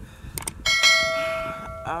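A short click, then a bell rings and fades over about a second: the sound effect of a subscribe-button and notification-bell overlay animation.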